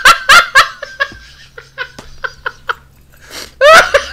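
Men laughing: a string of short, evenly spaced ha-ha pulses, with a louder burst of laughter near the end.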